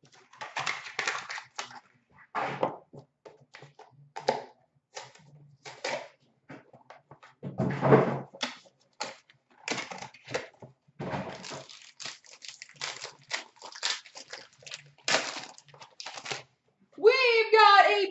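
Handling noise as a trading-card box and its packs are opened: irregular clicks, taps and crinkles of cardboard and wrapper, with one louder knock about eight seconds in. A voice starts just before the end.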